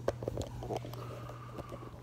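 Quiet room tone with a steady low hum, broken by a few light clicks and knocks in the first second as the recording phone is handled and moved, and a faint steady high tone from about a second in.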